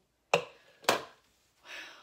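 An empty metal angel food tube pan is set down on a granite countertop, making two sharp knocks about half a second apart.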